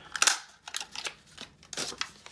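A two-and-a-half-inch oval lever craft punch cutting through off-white cardstock: one sharp snap just after the start, followed by softer rustles and clicks as the card and the punched-out oval are handled.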